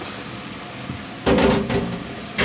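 Beef offal tipped from a mesh strainer into a pot of boiling water: steady boiling hiss, then a loud splash and clatter of the strainer against the pot about a second in, lasting about half a second.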